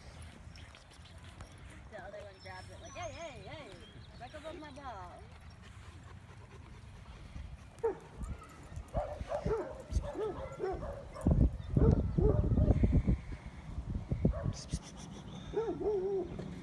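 Rhodesian Ridgeback puppy whining and yipping in short, wavering, high calls that come in runs. A loud low rumble on the microphone comes in near the middle.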